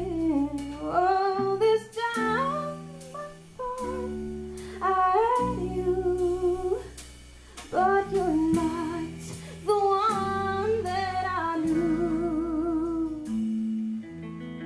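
Live band music: a woman singing phrases with vibrato, over two guitars and drums.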